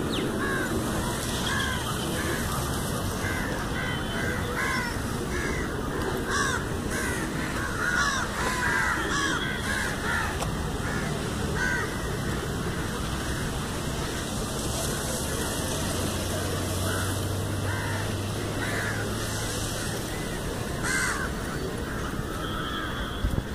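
Birds calling, many short harsh calls from several birds overlapping, thick through the first half and thinning out after about twelve seconds, over a steady rushing background noise.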